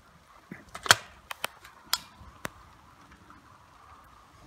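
Sharp mechanical clicks and clacks of an over-and-under shotgun being handled and loaded: about six clicks in quick succession over the first two and a half seconds, the loudest about a second in.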